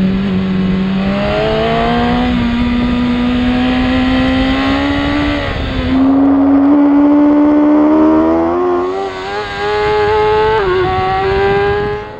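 Sportbike engine recorded onboard at high revs, its pitch climbing steadily under hard acceleration. About halfway through the note drops briefly, then climbs again to a higher pitch by the end.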